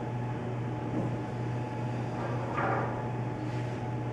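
A steady low hum under faint room noise, with a brief faint sound about two and a half seconds in.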